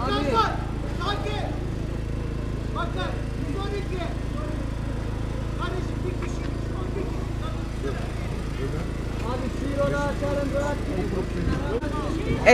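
Scattered, quiet voices of a waiting crowd over a steady low engine drone.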